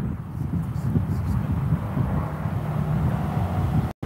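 Steady low rumble of a vehicle idling, with faint voices talking at a distance.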